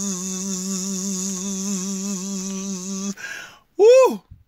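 A man humming one steady low note, a buzzing hum that imitates the vibration of a high-voltage transformer. It stops about three seconds in, and near the end a short, loud vocal cry rises and falls in pitch.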